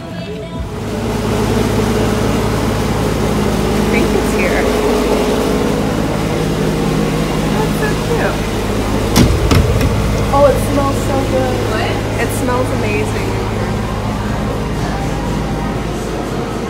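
A steady low mechanical hum that sets in about a second in and holds unchanged, with faint voices in the middle and a sharp click just after the halfway point.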